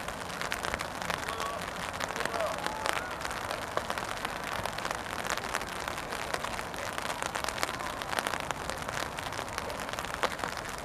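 Steady rainfall, with many separate drops ticking close to the microphone. Faint distant voices are heard in the first few seconds.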